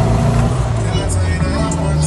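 Car driving along a city street, heard from inside the cabin: a steady low drone of engine and road, with faint voices.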